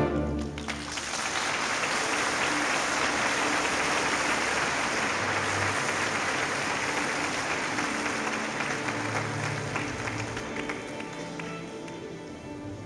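A full orchestra's loud closing chord breaks off at the start, and about a second later an audience's applause rises and holds, slowly fading near the end, with a few faint held notes beneath it.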